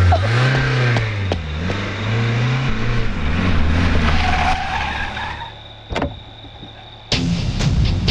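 A sedan's engine catching after a push-start and revving unevenly as the car pulls away, with tyre noise, fading out about five seconds in. A sharp click follows, and guitar music begins near the end.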